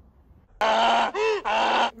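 A loud, drawn-out voice-like cry that starts suddenly about half a second in and lasts about a second and a half. In the middle its pitch swoops up and back down.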